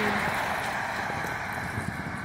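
Street traffic: a car passing by, its noise fading away, with wind buffeting the microphone.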